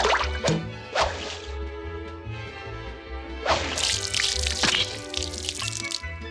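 Cartoon sound effects over background music: a few sharp whip-like cracks in the first second, then a long rushing, splashing whoosh about three and a half seconds in as the goldfish and its water spill onto the floor.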